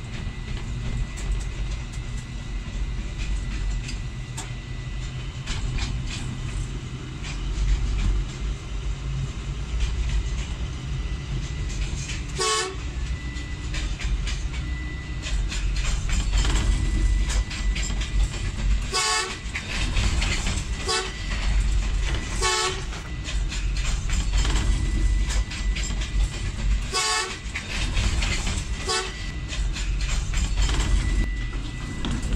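Steady low rumble of a ZCU-20 diesel-electric locomotive heard from inside its cab while under way, with short locomotive horn toots about five times in the second half.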